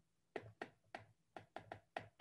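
Stylus tapping on a tablet screen as letters are hand-written, a run of about seven short, sharp taps at uneven spacing.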